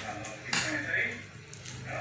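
Speech: voices talking in short phrases with brief pauses.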